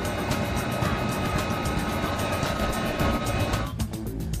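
Steady machinery noise with a few held hum tones, from the water-intake traveling-screen equipment, under background music. The machine noise drops away sharply near the end, leaving the music.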